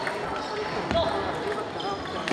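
Table tennis ball clicks: a few sharp ticks of a celluloid ball on table and paddle, over talking voices in the hall.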